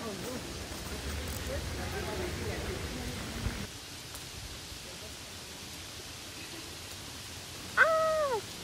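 Outdoor ambience in steady rain: an even hiss, with faint distant voices in the first few seconds. It drops slightly quieter about halfway through. A voice cries out right at the end.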